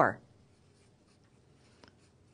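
Felt-tip marker writing on a white page: faint scratching strokes as a word is written.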